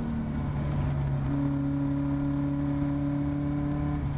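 Caterham Seven race car's engine running steadily at high revs, heard from the open cockpit with wind and road noise underneath, as the car eases off slightly through a bend. A higher tone joins the engine note about a second in.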